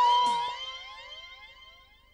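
Siren-like sound effect from a TV background score: several tones rising together in pitch, fading away over about two seconds. It starts under the end of a held note.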